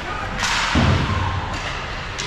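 Ice hockey rink sounds during play: a sharp crack about half a second in, then a heavy thud, the kind made by the puck or a player hitting the boards.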